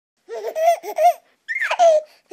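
A baby laughing: a few quick high-pitched laughs, then a longer squealing laugh that slides down in pitch near the end.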